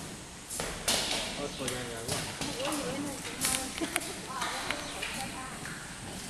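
Indistinct voices talking quietly, with a scatter of sharp clicks and knocks.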